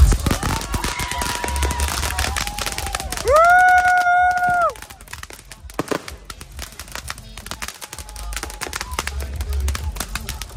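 Firecrackers popping in rapid strings of small cracks. Over the first half come several high held tones, the loudest lasting about a second and a half from a little past three seconds in; after that the crackling goes on more quietly.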